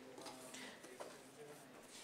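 Faint, indistinct murmur of people talking in a large room, with a single small click about a second in.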